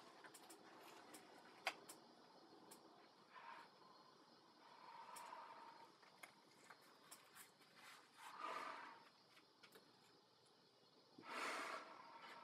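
Faint breathing inside a rubber GP-5 gas mask with a hose attached: four soft breaths a few seconds apart, the last two the loudest. Small clicks and rubbing come from the rubber hood being pulled on and adjusted.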